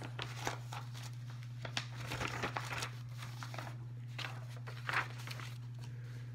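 Thin Bible pages being turned and rustled in a run of short, soft strokes, over a steady low electrical-type hum.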